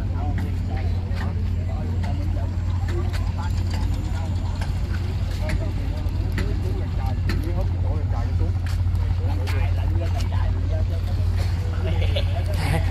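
People talking in the background over a steady low rumble, with scattered sharp clicks.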